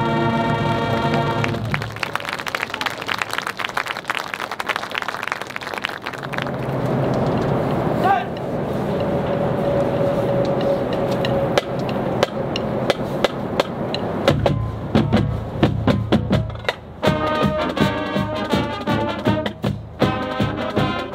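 A marching band's brass section holds a final chord that cuts off about a second and a half in, followed by applause and cheering from the crowd, with a rising whistle. Near the end the percussion starts a drum beat with bass drums and snares, and the band's winds come in just before the end.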